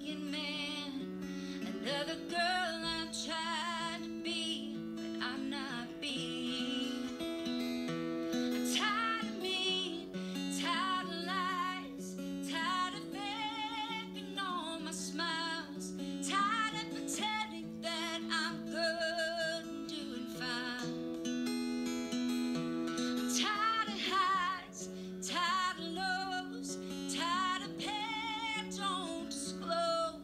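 A woman singing with vibrato over an acoustic guitar, a solo voice-and-guitar song. Her sung phrases come every few seconds, long wavering notes over the held guitar chords.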